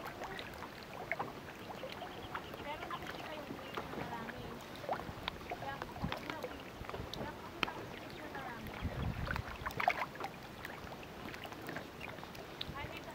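A crowded school of fish splashing and slurping at the water surface: many small, irregular splashes and plops.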